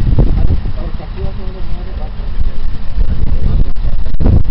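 Muffled, indistinct voices over a loud, low rumble of wind buffeting the microphone.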